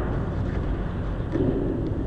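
Skateboard wheels rolling on a concrete bowl: a steady rumble with a few light clicks.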